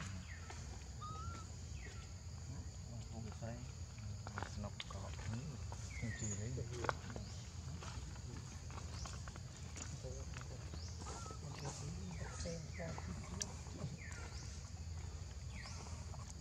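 Macaque troop calling: short, high squeaks that fall in pitch, repeated irregularly, with a few sharp clicks. Under them runs a steady high-pitched hum and a low rumble.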